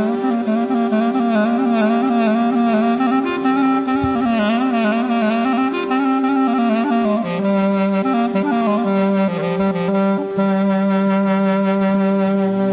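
Sarakatsan folk tune: an ornamented melody full of trills and wavering turns over a steady low drone. About seven seconds in the melody drops back and the drone sounds on its own before the tune resumes.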